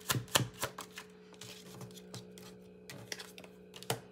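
Tarot cards being shuffled by hand: a run of quick card snaps and clicks, about four a second, that thins out about a second in, then a few scattered taps of the cards near the end. A faint steady hum lies under it.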